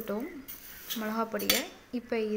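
Steel ladle stirring dry lentils and spices in a metal pot, clinking against the pot, with two sharp clinks in the second half.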